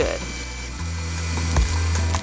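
KitchenAid stand mixer running with a steady low hum as it whips Italian meringue buttercream, with a sharp click about one and a half seconds in.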